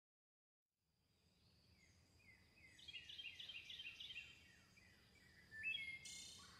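Faint chirping, like a small bird: a quick run of short falling notes, about five a second, a little after halfway, then a rising note near the end, over a faint steady high tone.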